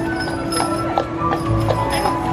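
Horse's hooves clip-clopping on pavement at a walk as it pulls a carriage, over music playing.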